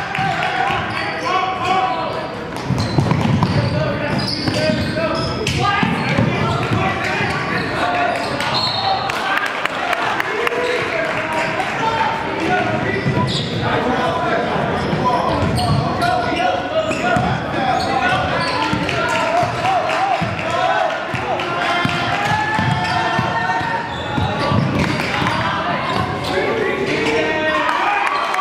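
Live basketball game in a gym: a ball bouncing on the hardwood court amid players, coaches and spectators talking and calling out, echoing in the large hall.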